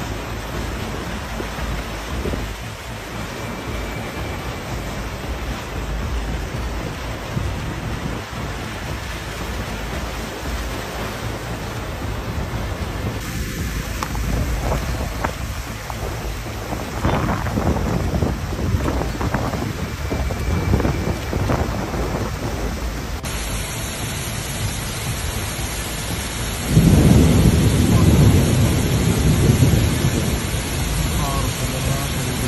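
Heavy rain and rushing floodwater: a steady rushing noise with a low rumble that shifts in character twice. A louder, deeper rush of cascading water comes in for the last few seconds.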